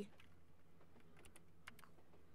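Near silence: room tone with a few faint short clicks in two quick clusters a little after a second in.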